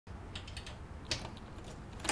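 Quiet room ambience: a low steady hum with a few small, irregular clicks, the most distinct one just after a second in.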